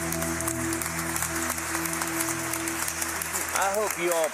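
Final chord of an acoustic guitar ringing out and fading, with applause over it.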